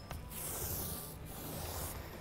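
Small paint roller rolling a wet coat of liquid polymer across a wooden tabletop, a soft rubbing hiss that swells and fades with each stroke.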